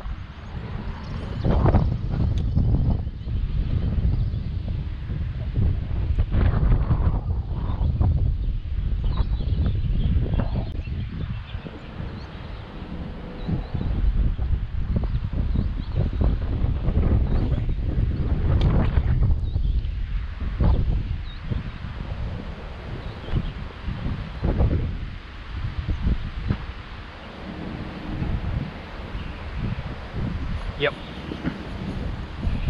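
Strong gusting wind buffeting the microphone, rising and easing in irregular gusts.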